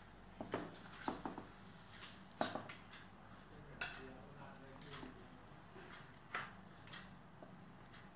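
A spoon clinking and scraping against a metal can in short, irregular clicks while baking soda is scooped out of it.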